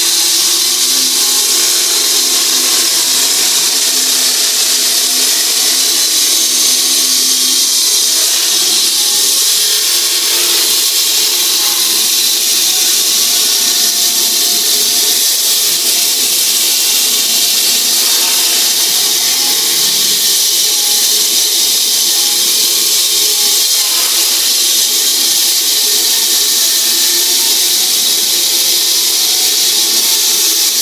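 Dr Bender high-frequency electric diamond-blade saw cutting into heavily reinforced concrete: a steady, loud, high-pitched grinding that runs without a break. Sparks show the blade cutting through the steel reinforcement.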